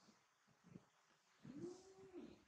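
Baby macaque giving one soft coo that rises and falls in pitch, starting about one and a half seconds in, after a couple of faint knocks.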